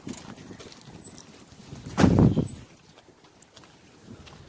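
A car door being shut, one dull thud about two seconds in, with faint steps and rustling around it.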